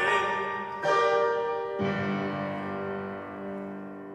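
Upright piano playing the closing chords of a song: two struck chords about a second apart, the last one left to ring and slowly die away.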